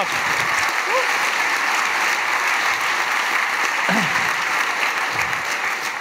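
Audience applauding steadily after a talk, with a brief voice rising above the clapping twice.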